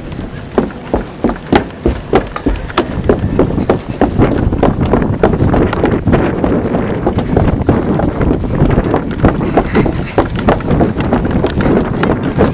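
Hurried footsteps on a wooden boardwalk, about three knocks a second, over wind on the microphone and the rumble of a jostled camera.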